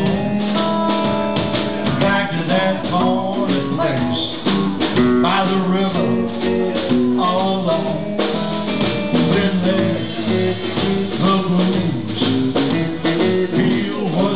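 Live blues band playing a passage without vocals: guitar lines with bent notes over bass and drums.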